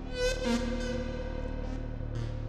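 Eurorack modular synthesizer (Doepfer A-100 modules through a Make Noise Mimeophon delay) playing a phase-locked-loop patch. A bright, buzzy pitched note sounds about a quarter second in, then a held tone rings over lower steady drones.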